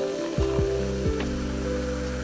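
Apple cider poured from a can into a glass, fizzing and crackling as it foams, under background music with deep falling bass notes.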